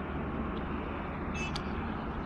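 Steady low rumble of a car driving along a road, with a short high-pitched squeak about one and a half seconds in.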